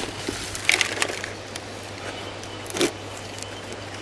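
Potting mix being scooped by hand from its bag and dropped and pressed into a plastic pot: a few short, soft crunching scrapes, about a second in and again near three seconds in.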